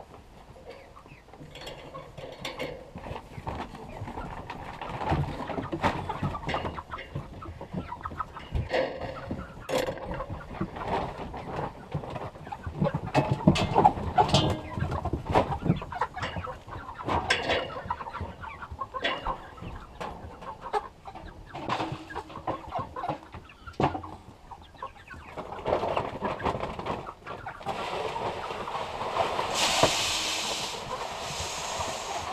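A flock of chickens clucking, with feed rattling as it is poured from a sack into the feeder around the middle. A steady hiss starts near the end.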